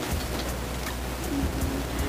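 Steady background hiss, with a short faint hum from a woman about one and a half seconds in.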